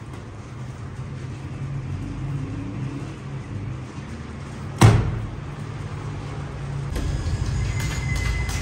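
A steady low machine hum from the bakery's dough-mixing equipment, with one heavy thud about five seconds in as a large lump of dough is dropped onto the marble table.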